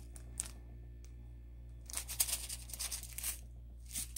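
Clear plastic sticker packaging crinkling as it is handled: a brief rustle about half a second in, then a longer stretch of rustling from about two seconds to past three seconds, over a steady low hum.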